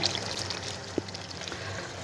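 Spiced onion-tomato masala paste sizzling and bubbling steadily in hot oil in a kadhai as it is fried, with one faint click about a second in.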